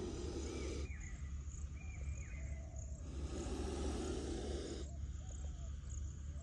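Spectacled cobra hissing with its hood spread in defence: two long breathy hisses of about two seconds each, the first ending about a second in, the second starting about three seconds in.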